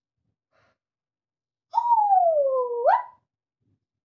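A child's single long wordless vocal call, about halfway through, sliding down in pitch and then sweeping sharply back up before it breaks off.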